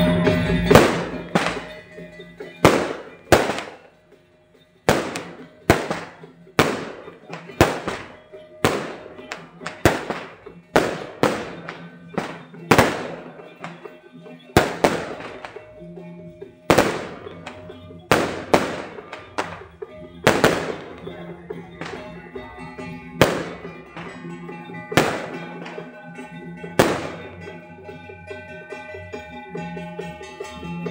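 Firecrackers going off one at a time, sharp bangs with a short echo, irregularly about once a second, with a brief lull about four seconds in. Steady music runs beneath them.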